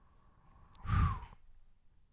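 A man sighs once into a close microphone: one breathy exhale about a second in.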